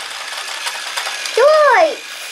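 Battery-powered TrackMaster toy train and logging-set mechanism running: a steady small-motor whirr with light plastic clicking as the set's lift raises a log. A short voiced exclamation cuts in about one and a half seconds in.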